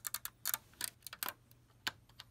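Plastic Lego pieces clicking as a white plate is pressed down onto the studs of a Lego Millennium Falcon model: a run of light, irregular clicks, the sharpest one near the end.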